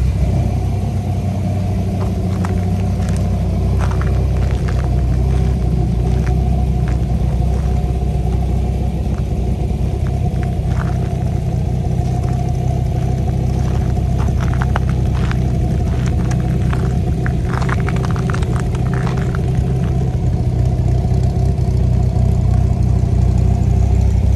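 The 2004 Dodge Viper's 8.3-litre V10 idling steadily.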